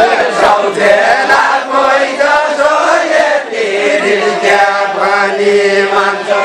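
A group of men and women singing a far-western Nepali deuda folk song together, unaccompanied, several voices overlapping in a chant-like line with held notes.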